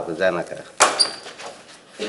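A brief bit of voice, then two sharp knocks about a fifth of a second apart, the second with a short high metallic ring.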